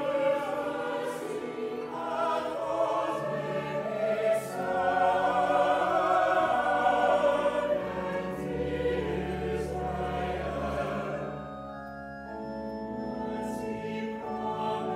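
Church choir singing a slow, sustained passage in several parts, with a low bass note coming in about five seconds in and the sound softening around twelve seconds in.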